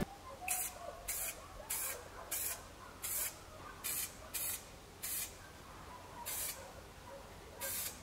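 Aerosol spray can hissing in about eleven short bursts, each well under half a second, as paint is misted onto a car fender.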